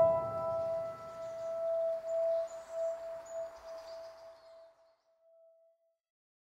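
The last note of the background music, a struck bell-like tone like a singing bowl, rings on and slowly fades away to silence over about five seconds.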